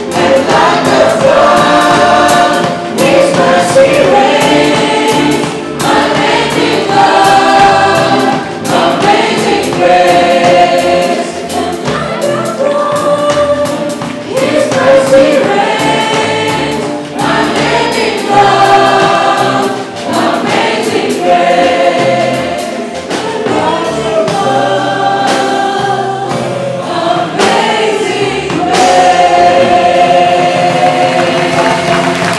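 A live worship song: a band with drum kit, cymbals and hand drums, and many voices singing together in long held notes.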